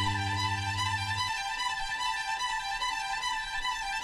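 Instrumental passage from a Soviet pop vinyl LP: a held chord with bowed strings. The low bass note stops about a second in while the higher notes keep sounding.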